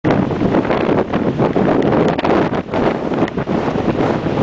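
Strong wind buffeting the microphone in loud, uneven gusts, over heavy surf breaking on rocks.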